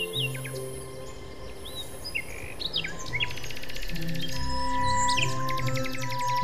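Birds chirping in a forest over soft background music. About halfway through, a fast, even trill joins in.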